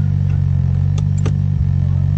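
Honda Civic EK9 Type R's 1.6-litre VTEC four-cylinder engine running with a steady low drone, heard from inside the cabin. A few sharp clicks come about a second in.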